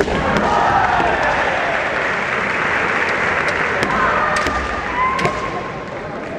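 Kendo bout: a sharp crack of bamboo shinai at the start, then long drawn-out kiai shouts from the fighters. Later come more shouts and a couple of sharp shinai clacks.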